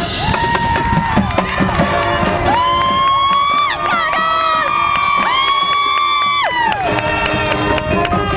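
High school marching band holding long brass chords that bend down in pitch as they end: a shorter one, then a long one lasting about four seconds. A crowd cheers over it.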